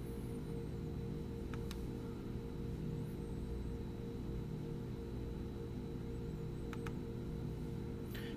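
Steady low electrical or room hum, with two pairs of faint computer-mouse clicks, the first about a second and a half in and the second near the end, as a file is opened in a text editor.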